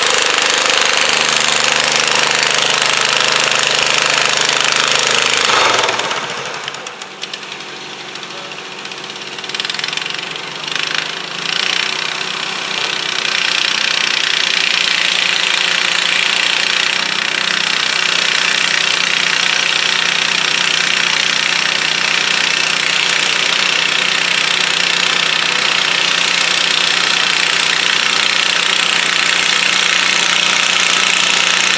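Cub Cadet garden tractor's engine running hard under load, pulling a weight-transfer sled. About six seconds in the sound drops abruptly, and other garden tractor engines come up again by the middle and run steadily.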